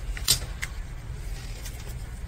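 A tarot card being laid down onto a spread of cards on a wooden table: one sharp snap about a third of a second in, with a few lighter card clicks and rustles, over a steady low hum.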